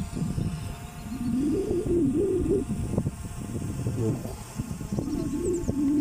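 A man's voice murmuring without clear words, in two stretches with a short pause between, over a steady low rumble.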